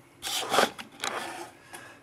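Printed circuit board scraping across a desktop as it is turned and slid by hand. There is one longer rubbing scrape, then a shorter one about a second in.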